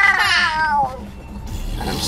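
A high, drawn-out, meow-like vocal wail that slides down in pitch and stops about a second in.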